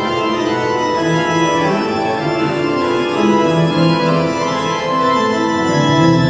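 Organ music: sustained full chords at a steady level, with the bass notes changing every second or so.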